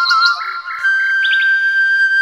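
Bamboo flute melody: the note slides up in small steps, then settles into one long held high note from just under a second in. Quick high bird chirps sound over it in the first half-second and again briefly in the middle.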